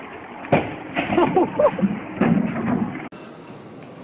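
A sudden bang about half a second in, followed by shouting voices and a second knock a little after two seconds. The sound then cuts off abruptly to a steady background noise.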